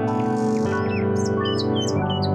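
Instrumental background music of held chords that change about half a second in and again near the end, with birds chirping over it in the second half.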